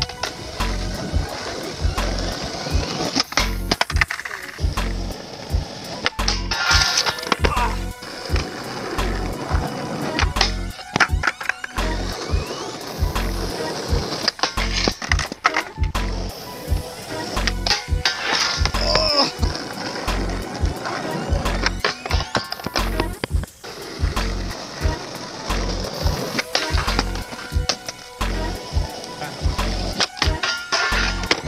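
Skateboards rolling on rough asphalt and popping onto a flat metal rail, with sharp clacks of tails and wheels hitting the ground and the rail and the grind of boardslides, over background music with a steady beat.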